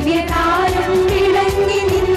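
Female vocal group singing through microphones, holding one long note over accompaniment with a steady beat.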